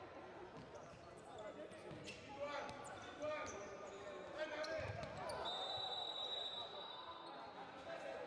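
Faint live sound of an indoor futsal match: distant voices and shouts of players and spectators, with a few sharp knocks of the ball being kicked or bouncing on the wooden court, echoing in the sports hall.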